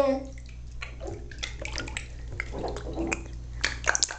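Bath water splashing in a bathtub as a baby moves about in it: a run of irregular short splashes.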